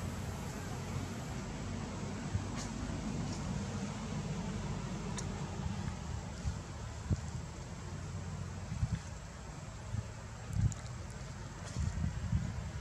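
Steady low background rumble, with a few soft thumps in the second half.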